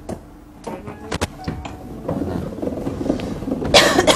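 Handling noise of a disc music box and its perforated metal disc: scattered sharp clicks, then a denser mechanical rattle from about two seconds in, and a loud scrape near the end.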